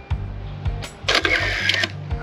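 Mamiya 645 Pro medium-format film camera firing: a click of the shutter about a second in, followed by a short mechanical whirr of the film advance lasting just under a second. Background music with low steady notes plays underneath.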